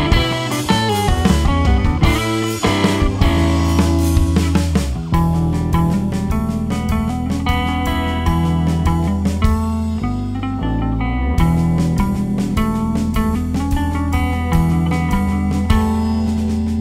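Live band jam: electric guitar played through the JHS Artificial Blonde chorus/vibrato pedal, over an electric bass line and a drum kit.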